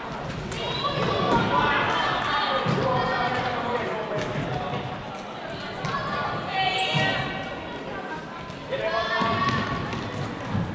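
Shouted calls from players and coaches echoing in a sports hall during a floorball game, with short knocks of sticks and ball and footsteps on the court floor.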